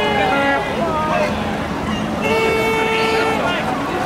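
Boat horn sounding twice: a blast that ends about half a second in, then a second blast about a second long near the middle, over the voices of onlookers.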